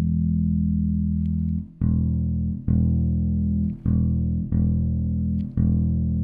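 Active electric bass played through a Laney RB3 bass combo amp while the amp's gain knob is turned up: a low note keeps ringing, then the same note is plucked again five times, each let ring.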